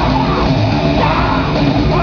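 Grindcore band playing live at full volume: heavily distorted guitars, bass and drums with shouted, yelled vocals over them.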